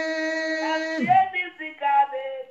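A man singing, holding one long note that falls away about a second in, then short sung phrases.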